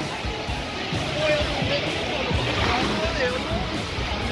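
A busy beach: many people's voices mixed with breaking surf, with background music underneath.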